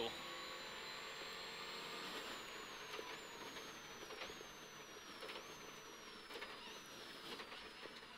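Faint, muffled cabin noise of a Subaru Impreza rally car slowing for a square left, with a thin high whine that slides down and steps back up several times, following the engine revs.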